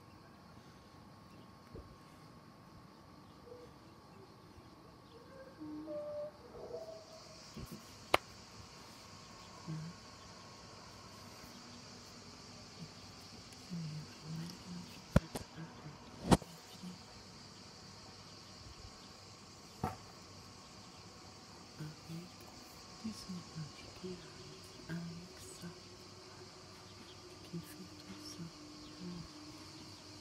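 Steady high-pitched insect buzzing that sets in about seven seconds in and carries on. A few sharp clicks, the loudest sounds, break it four times.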